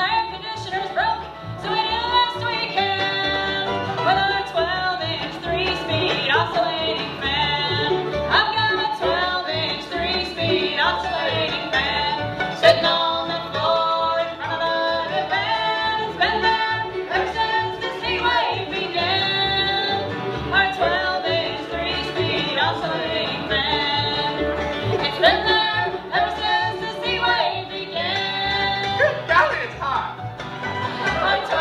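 A bluegrass band playing a song live.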